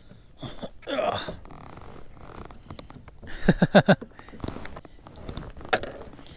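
A man laughing in short bursts, loudest about three and a half seconds in, with a breathy exhale about a second in.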